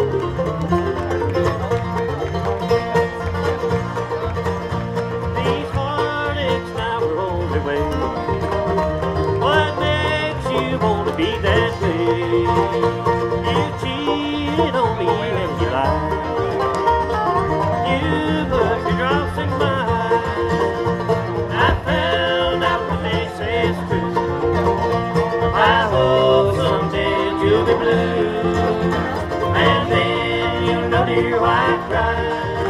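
Acoustic bluegrass band playing live, the banjo to the fore over guitar, mandolin, dobro and bass, with no singing heard.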